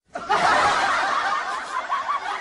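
People laughing, cutting in abruptly after a brief dropout in the sound and loudest in the first second before easing off.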